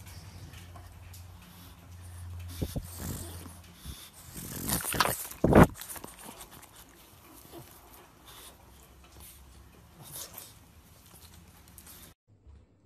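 A pug making sounds close to the phone's microphone, loudest in one short burst about five and a half seconds in.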